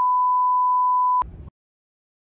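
Television test-pattern tone, a steady single-pitch beep that cuts off suddenly after a little over a second. A click and a brief burst of low noise follow, then dead silence.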